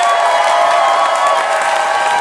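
Audience applauding and cheering, with several long, held whoops over the clapping.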